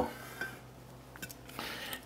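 Light handling sounds of a glass olive oil bottle being taken down from a kitchen cabinet and opened: a faint click about half a second in, a few small ticks a little later, and a soft rustle near the end.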